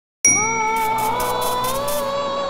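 Intro music starting suddenly with a bright bell-like ding about a quarter second in, then a held, slowly gliding melody over quick high percussive ticks about five a second.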